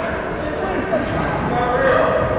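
Indistinct voices of players and spectators echoing in a gymnasium, with a basketball bouncing on the hardwood floor.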